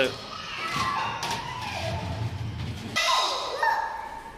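Footsteps thudding on a wooden walkway, a low uneven rumble lasting about two seconds, with children's voices over it.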